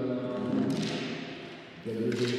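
A man's voice, drawn out and without clear words.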